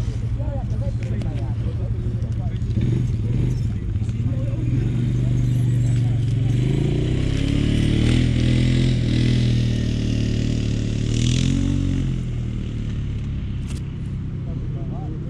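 A motor engine running close by with a steady low hum. It grows fuller and louder from about six seconds in and eases off near the end, with voices in the background.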